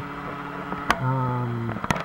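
A man's voice holding a drawn-out hesitation sound, muffled by a taped-over microphone, with a sharp click just before it and another near the end.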